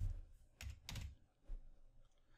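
Computer keyboard typing: about four quick keystrokes, typing a short search word and entering it.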